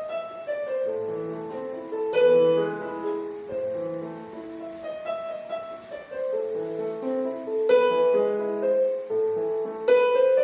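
Yamaha portable electronic keyboard in a piano-like voice, played with both hands: a short melody over chords, stepping through tones and semitones. Louder chords are struck about two seconds in and near the end.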